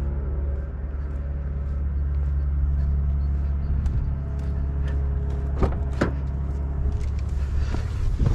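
2021 Toyota Aygo's driver door being unlatched and opened: two sharp clicks a little over halfway through, over a steady low rumble.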